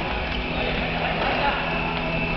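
Din of futsal play echoing in a large gymnasium: players' shoes and footsteps on the wooden court, touches of the ball, and players calling out.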